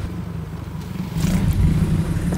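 A motorbike approaching, its engine running low and steady and growing louder about a second in.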